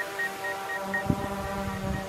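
DJI Mavic 2 Pro quadcopter hovering close by, its propellers giving a steady whine of several stacked tones. A faint rapid beeping runs for about the first second, and wind buffets the microphone from about a second in.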